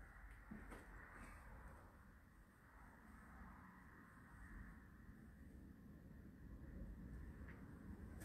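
Near silence: faint room tone, with a couple of faint ticks about a second in.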